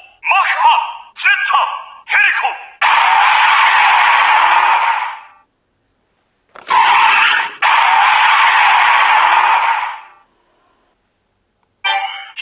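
Kiramai Changer Memorial Edition toy bracelet playing electronic sound effects through its small speaker: three short pitched sounds, then two long hissing bursts with a brief gap between them, then silence for the last couple of seconds.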